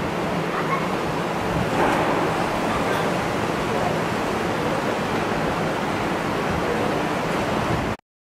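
Steady rushing of wind on the microphone outdoors, with faint voices in the background. It cuts off abruptly at the end.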